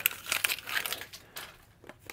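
Backing paper being peeled off double-sided tape and crinkled in the hand: irregular crackling and rustling that dies away near the end.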